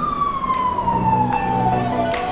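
Siren wailing: one tone sliding steadily down in pitch, turning to rise again at the very end.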